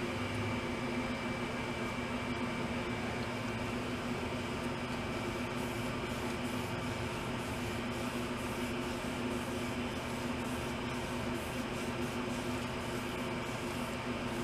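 Steady machine hum of a running motor or fan, several pitched tones held level without change.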